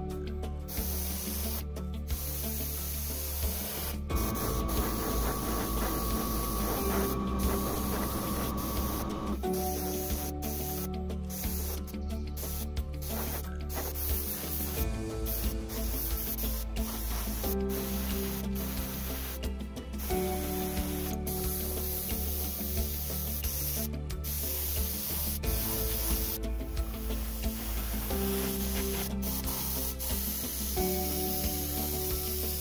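Iwata LPH-80 mini spray gun hissing as it sprays paint, in repeated bursts with brief gaps where the trigger is let off. Background music plays underneath.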